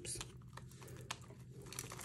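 Faint crinkling and a few light clicks of clear plastic binder envelopes being handled and pressed flat in a ring planner.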